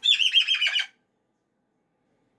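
Moluccan cockatoo giving one loud, harsh screech that lasts just under a second.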